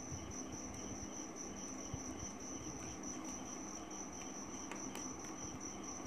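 A cricket chirping in a steady, evenly pulsing high trill, with a few faint scratches of a pen drawing lines on paper.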